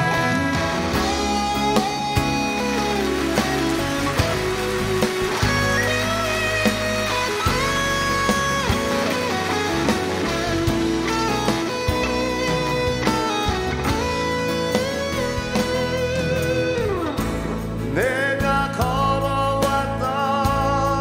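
Live rock band playing an instrumental break, a guitar lead line with bent, gliding notes over drums, bass and keyboards.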